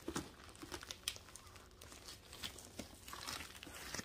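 Plastic shipping packaging crinkling faintly as it is unwrapped by hand, in scattered small crackles.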